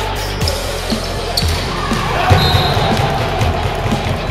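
Dull, irregular thuds of a volleyball being hit during a rally in a sports hall, over music and voices.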